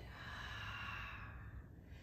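A woman's slow, audible exhale through the mouth, a breathy rush of air lasting about a second and a half before fading, paced to a yoga breathing cue.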